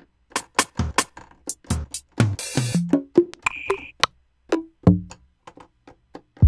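Sampled drum-kit sounds from a software drum kit played one hit at a time at an uneven pace: low kick and tom hits mixed with short high clicks, with a short noisy hit about two and a half seconds in and a brief high tone just after.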